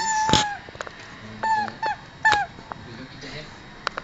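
West Highland white terrier giving three short, high whines or yelps in play, each sliding slightly down in pitch, with a few sharp clicks.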